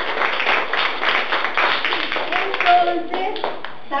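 Applause from a few people clapping by hand, thinning out after about three seconds, with a brief voice near the end.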